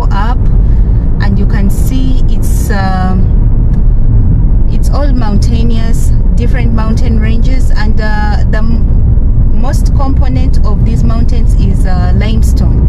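A voice, talking or singing, over the steady low rumble of a car driving, heard from inside the cabin.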